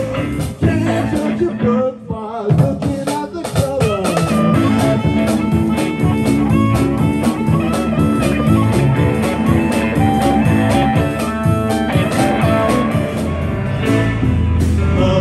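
Live blues band playing: electric guitar over a drum kit and bass in a steady groove, with notes bending and sliding in pitch in the first few seconds.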